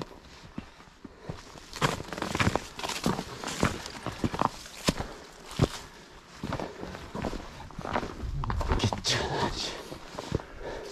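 A hiker's footsteps on a frosty, rocky mountain trail strewn with dry leaves: irregular steps and scuffs on frozen ground.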